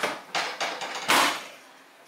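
A quick series of about five sharp knocks and clacks from a chiropractic adjustment on a padded treatment table.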